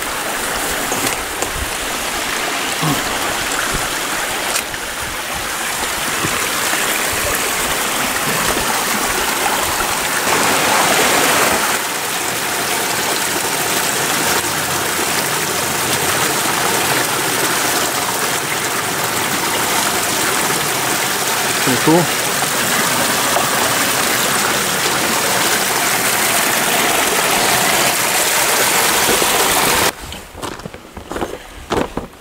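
Small forest creek rushing and splashing over rocks in a little cascade: a steady, loud water noise.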